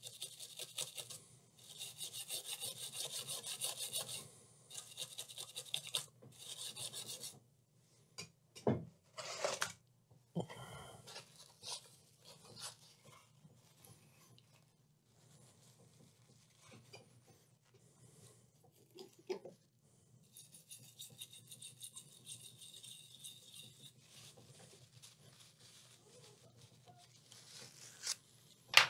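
A small stiff-bristled brush scrubbing a wet laptop circuit board in quick back-and-forth strokes, in short bursts with pauses, to clear burnt residue around an exploded capacitor. A few sharp clicks fall in the pauses.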